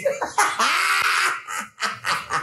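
Men laughing: one long burst of laughter, then a few short bursts near the end.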